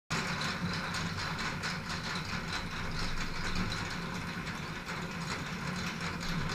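Ribbed steel roll-up door rolling open: a steady low hum with a light, even rattle of the slats.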